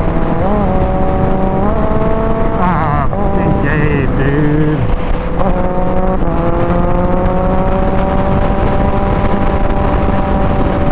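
Kawasaki Ninja H2's supercharged inline-four running hard at highway speed, with heavy wind rush on the microphone. Its pitch steps up, wavers and dips through the first half, then climbs slowly and steadily in the second half.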